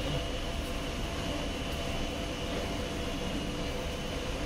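Steady hum of a Tyne and Wear Metrocar standing at an underground platform with its doors open, a low rumble under a few faint steady tones.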